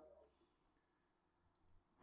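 Near silence, with two faint ticks about a second and a half in.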